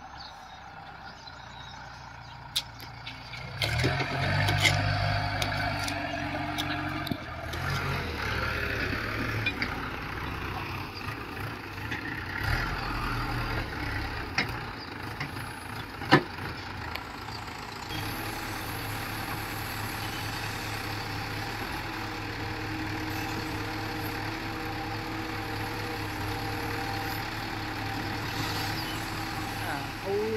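Diesel engine of a Bull backhoe loader running, its revs rising and falling under hydraulic load for the first part, then running steadily; a sharp knock sounds about halfway through.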